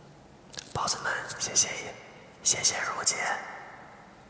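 A man's voice whispering two short phrases, about a second apart, with strong hissing sibilants.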